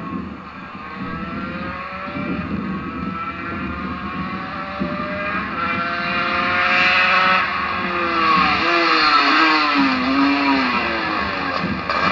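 Gilera GFR 125's single-cylinder two-stroke engine being ridden hard. Its note climbs in pitch gear after gear and grows louder as the bike comes closer, then wavers and falls in the last few seconds.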